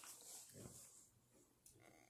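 Near silence: quiet room tone with a faint low murmur about half a second in and a small click near the end.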